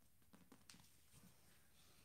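Near silence: room tone, with a few faint, brief rustles and soft clicks from two grapplers shifting on a mat while holding a choke.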